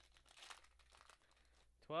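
Foil wrapper of a Pokémon card booster pack crinkling and tearing in the hands: a faint, irregular rustle.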